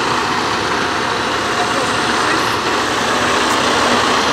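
Semi-truck diesel engine idling steadily.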